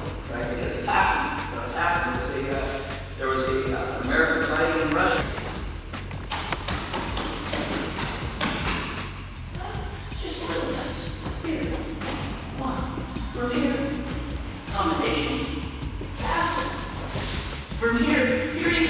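A voice and music with held, pitched tones, fading in the middle, where thuds and shuffling come through as two jujitsu players grapple on a padded training mat.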